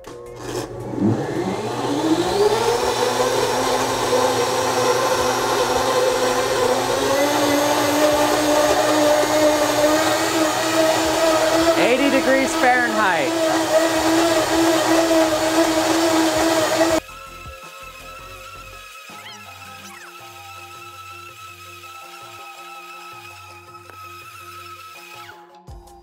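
Blendtec blender spinning up about a second in, then running at full speed through a dozen raw eggs with a loud, steady whine that climbs slightly in pitch; the mixing is heating the eggs by friction. The blender sound cuts off suddenly past the middle, leaving quieter background music.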